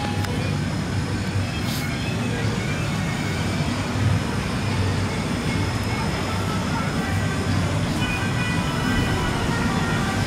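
Steady outdoor background noise: a low rumble with an even hiss above it and a few faint steady high tones.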